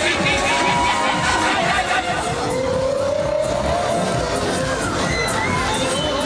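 Funfair crowd noise: riders on a fairground ride shouting and cheering over steady ride music, with a long rising shout or scream about two seconds in.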